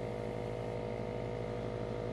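Airbrush air compressor running steadily: a constant motor hum with the hiss of air.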